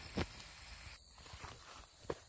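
Faint field ambience: a steady high-pitched insect drone, likely crickets, with a single click just after the start.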